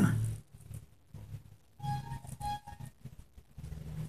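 Two short honks of the same pitch, about half a second apart and faint: the horn of a street ice-cream vendor going by.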